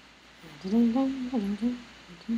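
A woman humming a short wordless phrase of a few rising and falling notes, starting about half a second in and lasting about a second and a half.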